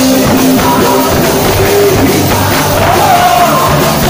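Live punk rock band playing loud, with bass guitar and a voice singing into the microphone.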